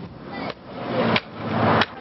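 Hammer blows, three sharp strikes about two-thirds of a second apart.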